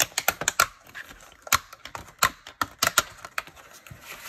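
Fingernails picking and tapping at the clear plastic shrink-wrap on a disc-bound notebook to open it: a string of sharp, irregular clicks and plastic crackles.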